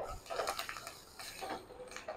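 Slotted wooden spatula stirring spices through oil in a non-stick kadai: soft, irregular scrapes and taps against the pan, in short clusters.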